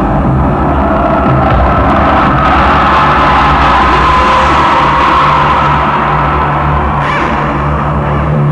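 Loud electronic dance music played by a DJ over a club sound system: a steady low bass line under a hissing swell that builds through the first seconds and fades away near the end.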